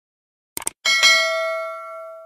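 Subscribe-button animation sound effect: two quick clicks a little over half a second in, then a bright bell chime just under a second in that rings on and slowly fades.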